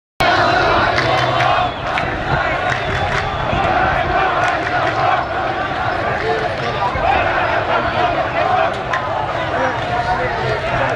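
A large crowd of street protesters shouting, many voices at once, loud and continuous.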